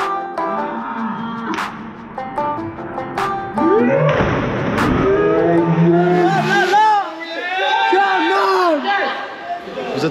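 Background music, then a splash of several bodies hitting the water about three and a half seconds in, followed by several seconds of loud, long wavering yells and cheers from the jumpers and onlookers.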